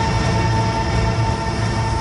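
A steady drone of several held tones, without a beat.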